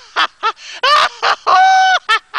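A person's exaggerated cackling laugh: short high-pitched bursts, then a long held shriek near the end.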